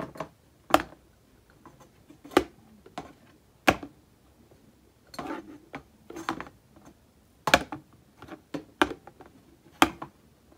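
A glass object knocking against a clear panel of a sensor test rig as it is moved past capacitive proximity sensors: about six sharp knocks, irregularly spaced a second or more apart, with softer rubbing and handling between them.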